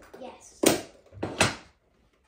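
Two sharp knocks about three-quarters of a second apart: objects being moved and set down on a tabletop.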